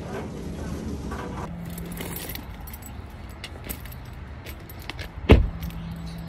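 Keys jangling and clinking in short scattered clicks over a steady low hum, with one heavy thump near the end.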